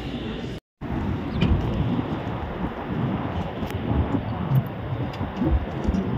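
Outdoor noise: wind rumbling on a phone microphone, with traffic in the background. It follows a brief dropout in the sound under a second in.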